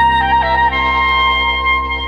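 Oberkrainer-style Slovenian folk band music. A woodwind holds a melody note, slips through a quick little ornament about half a second in, then holds a slightly higher note over sustained chords and a steady bass.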